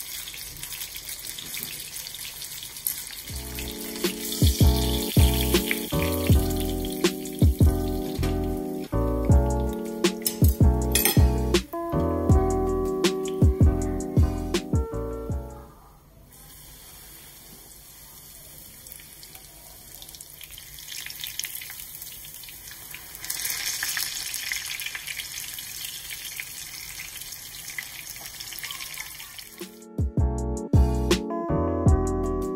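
Breaded pork cutlet sizzling as it shallow-fries in oil in a pan, a steady hiss. Background music plays over it from about three seconds in and stops abruptly about halfway through, leaving the sizzle alone. The sizzle grows louder for several seconds later on.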